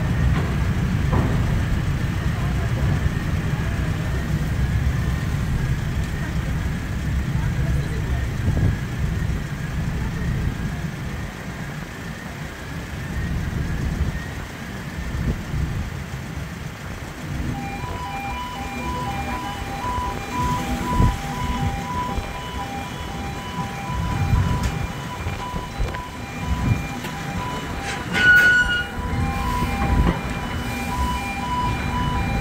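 Low rumble of the ferry's engines on the vehicle deck, then, a little past halfway, an electronic warning beeper starts up, repeating alternating tones until the end.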